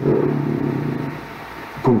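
A man's drawn-out hesitation sound, a held "uhh" in mid-sentence, that fades over about a second and a half.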